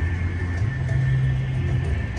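Steady low rumble of outdoor city noise, with a faint steady high tone above it.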